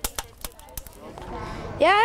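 Wood fire crackling in a metal fire barrel, with a few sharp snaps in the first second; a child says "ja" near the end.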